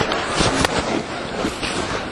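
Theatre audience applause dying down, a dense patter with a few separate sharp claps standing out, fading gradually.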